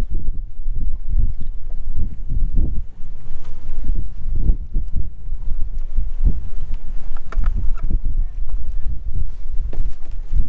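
Wind buffeting the microphone in uneven, gusting low rumbles out on open water.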